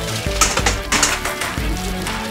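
Upbeat background music, with short hissing bursts of water spraying from a hose about half a second and again about one second in.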